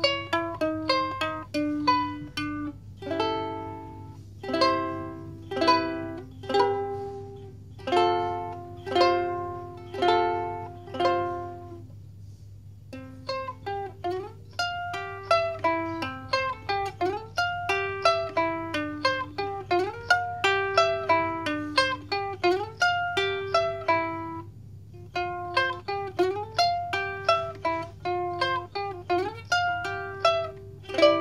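Mahalo Kahiko ukulele fingerpicked: a melody of single plucked notes and chords that ring briefly. After a short pause near the middle, a quicker run of notes follows, with some notes sliding in pitch.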